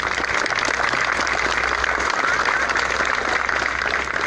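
A crowd applauding: many hands clapping at a steady level, beginning just before and fading just after.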